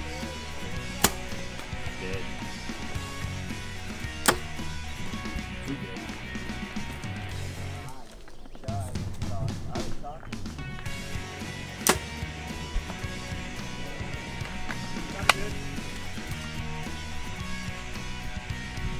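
Background music plays throughout, with four sharp cracks spread through it, from compound bows being shot.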